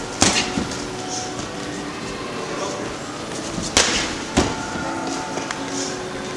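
Boxing gloves smacking into focus mitts: one sharp smack just after the start and two more about four seconds in, a little over half a second apart, over a steady background hum.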